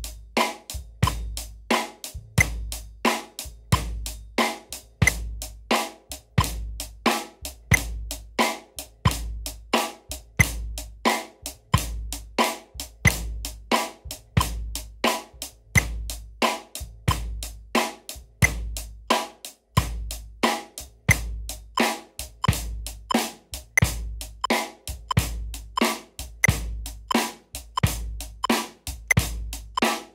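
A drum kit played alone in a steady groove: bass drum, snare and hi-hat keeping an even pulse. It is played right on the beat, as the example of straight timing against laid-back playing. There is a brief break about two-thirds of the way through.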